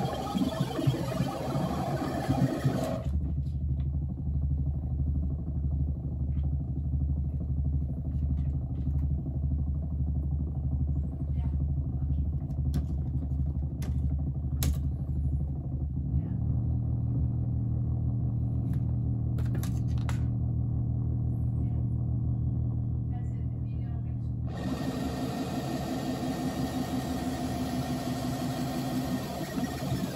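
Electronic noise drone from a modular synthesizer and effects chain, including an Electro-Harmonix Big Muff fuzz and a Steiner voltage-controlled filter, being tweaked by hand. A low steady drone has its upper frequencies filtered away about three seconds in. Its pitch steps up about halfway through, and the bright upper noise opens back up near the end.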